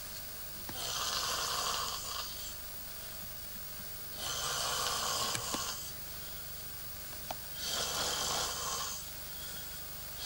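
A sleeping man snoring through his open mouth, three long rasping snores about three and a half seconds apart.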